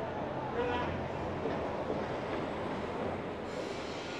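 Traffic on a busy city street: a steady low engine drone from passing vehicles over road noise.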